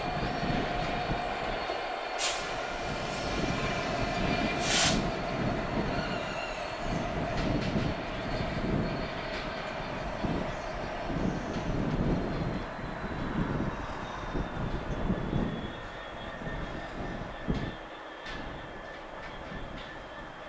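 GBRf Class 66 diesel locomotive moving slowly as a light engine, its two-stroke V12 diesel engine running with an uneven low pulsing. Through the first five seconds a steady wheel squeal rises above it, and two short hisses come at about two and five seconds in.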